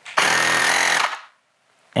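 Bosch EasyPump cordless air compressor starting up and running briefly, then winding down and shutting off by itself after about a second as it reaches its 0.3 bar preset (auto stop).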